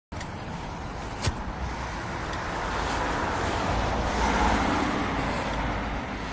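Street traffic: a car passing, its noise swelling to a peak about four seconds in and easing off, with a low rumble underneath. A single sharp click about a second in.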